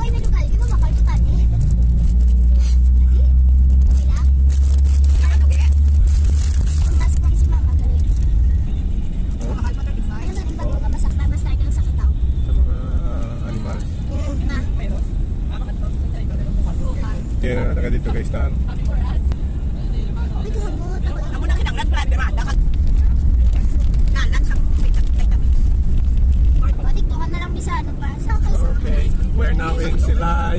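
Low engine and road rumble inside a moving vehicle's cabin, heaviest for the first several seconds and then steady, with voices heard now and then.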